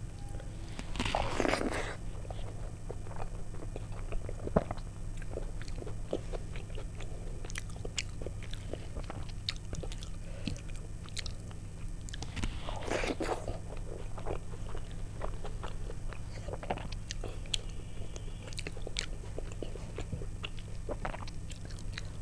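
Close-up eating sounds: fingers squishing and mixing soft khichuri on a plate, louder about a second in and again near the middle, with wet chewing and small mouth clicks between, over a steady low hum.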